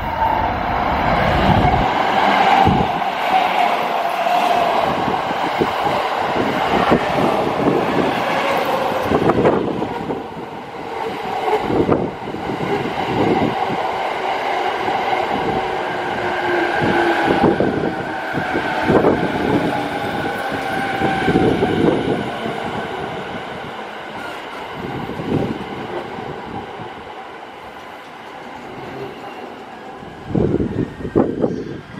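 JR East E217 series electric train running past close by: a whine slowly falling in pitch, with repeated knocks of the wheels over rail joints. The sound fades in the last few seconds as the train moves away.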